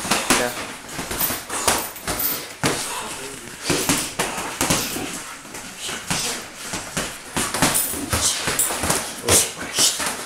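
Boxing gloves landing punches in sparring: a string of irregular sharp thuds, often in quick clusters of two or three, about two a second overall.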